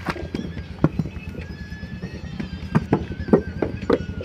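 Wet clay being slapped and pressed by hand into a wooden brick mould, a run of dull slaps and knocks that come faster near the end as the mould is filled and turned over.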